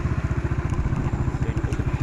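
Small motorcycle engine running at a steady speed, a fast, even putter that holds unchanged throughout.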